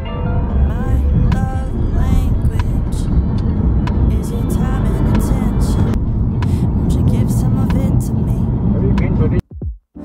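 Steady low rumble of road and engine noise inside a moving car's cabin, with a voice and music over it. It cuts off abruptly about nine and a half seconds in.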